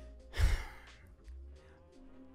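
A man's short, exasperated sigh close to the microphone, about half a second in.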